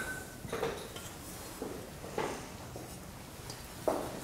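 Metal soil-sampling tools being handled on a tabletop: a few light, scattered knocks and clinks as the parts are picked up and set down, the last near the end a little louder.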